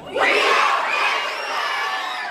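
A room full of schoolchildren cheering and shouting together. It bursts out suddenly and is loudest at first, then eases off.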